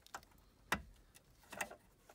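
Three short plastic clicks, the loudest about three-quarters of a second in, as a USB cable connector is handled and plugged into the back of a car stereo head unit.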